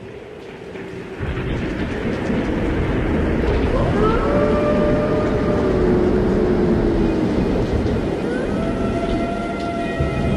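Logo intro sound effect: a loud rumbling roar that swells up about a second in and holds, with a few sliding tones gliding over it in the second half.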